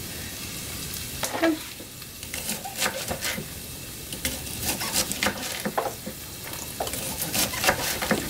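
Kitchen knife chopping green asparagus into small pieces on a wooden cutting board: irregular short taps of the blade through the stalks onto the wood, coming more often from about two seconds in.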